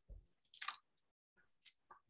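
Near silence broken by a few faint, brief mouth clicks and breath sounds close to a headset microphone: one about half a second in and two tiny ones near the end.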